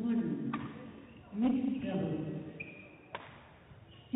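Badminton rally: a racket strikes the shuttlecock sharply twice, about two and a half seconds apart, in a large hall. Voices carry between the hits, along with a brief high squeak.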